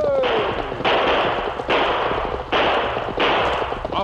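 Radio drama sound effect of a volley of five gunshots, evenly spaced about three-quarters of a second apart, each a loud sharp blast that rings briefly. The tail of a falling voice is heard at the start.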